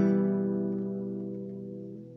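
An E minor chord strummed once on an acoustic guitar, ringing and fading away slowly, played with the third string left open.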